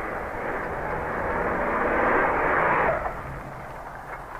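A full-size pickup truck driving up and pulling to a stop. Its engine and tyre noise grows louder, then drops away about three seconds in.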